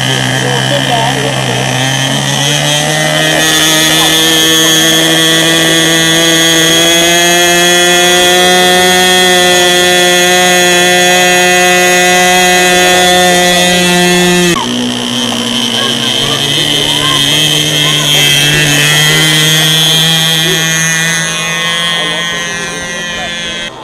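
Small combustion engine of a radio-controlled model airplane running at high revs, a steady high-pitched whine that climbs in pitch over the first few seconds and then holds. About two-thirds of the way through, the pitch and level drop suddenly as the plane is hand-launched and flies away, and the engine carries on steadily in flight.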